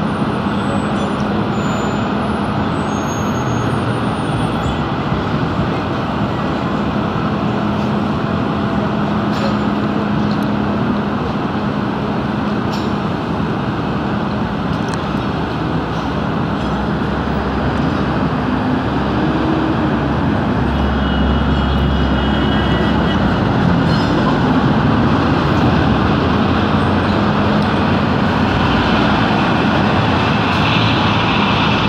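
Steady din of city traffic and construction machinery with a low hum. A deeper rumble swells about two-thirds of the way through.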